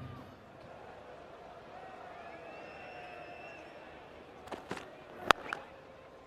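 Low stadium crowd murmur, then near the end a couple of soft knocks and a single sharp crack of a cricket bat striking the ball.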